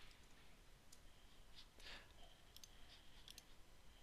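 Near silence, with several faint, short clicks from someone working a computer.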